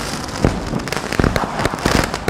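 Sound effect accompanying an animated logo: a dense crackling hiss with irregular sharp pops and cracks, like fireworks.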